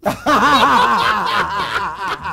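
A person laughing in quick repeated ha-ha pulses, about four a second, starting suddenly and loud.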